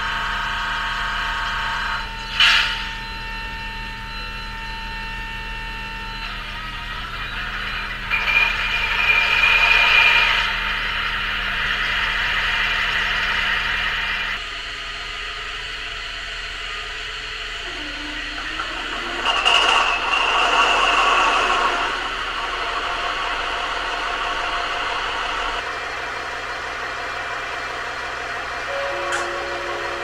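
Digital sound decoder in a Märklin H0 model of a DB class 218 diesel locomotive, playing the simulated diesel engine sound through the model's small speaker. It runs steadily with two louder passages, and one low part of the sound drops out partway through, then another near the end, as the engine sounds of the two locomotives are switched.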